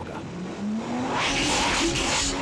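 Comedy film sound of a runaway vacuum cleaner: a motor tone rises in pitch, then a loud rushing roar of air builds from a little after a second in.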